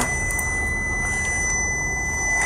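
A steady, unbroken high-pitched electronic tone from the car's warning system, with its driver's door standing open, over a low steady hum.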